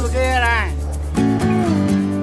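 Background music: a song with a singing voice over guitar, the voice holding a long gliding note in the first second before the backing changes.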